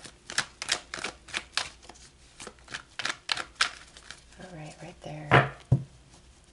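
A tarot deck being shuffled by hand: a quick run of sharp card slaps, about three a second, then two louder knocks near the end.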